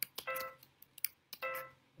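MIDI playback of a notated composition in Spanish Phrygian mode from notation software: a few short pitched notes, one near the start and another just past a second in, with soft clicks between them.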